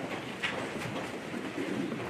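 Steady room noise with one soft click about half a second in.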